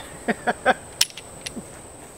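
A man laughing briefly, a few quick chuckles, followed by a sharp click about a second in and a fainter click half a second later.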